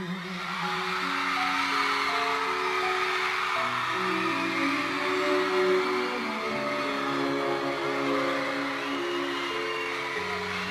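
Instrumental ending of a slow ballad: violins and cellos play long sustained chords that change slowly, without singing.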